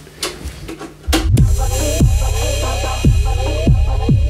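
Electronic music track: after a sparse moment, the beat drops in about a second in with a deep sub-bass, heavy kick drums falling in pitch, and repeated upward-sliding synth notes.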